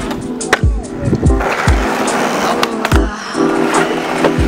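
Skateboard tricks over background music with a steady beat: a sharp clack about half a second in, then about two seconds of scraping as the board grinds along a concrete ledge, ending in another clack.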